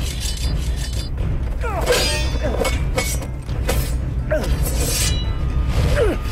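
Film fight sound mix: sword blades clashing and ringing in quick strikes, loudest about two seconds in, over a low, steady music score.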